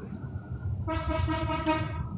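A horn sounds once: a single steady, unwavering tone lasting about a second, starting a little under a second in, over a low background rumble.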